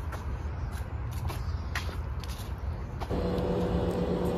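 Low outdoor rumble with a few light ticks, as of walking; about three seconds in, a steady droning hum of a passing train sets in and holds.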